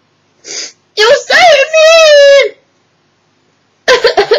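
A woman crying: a short breath about half a second in, then sobbing that turns into one long, wavering wail lasting about a second and a half. A fresh sob starts just before the end.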